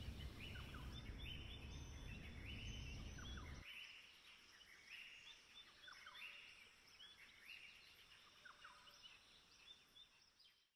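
Faint birds calling repeatedly in short chirps over a low background rumble. The rumble cuts off suddenly about three and a half seconds in, leaving only the faint bird calls.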